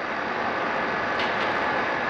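Steady rushing background noise with a faint high steady whine running through it.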